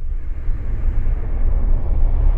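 Intro of a DJ remix: a deep, steady rumble with noisy hiss above it, slowly growing brighter, with no beat or melody yet.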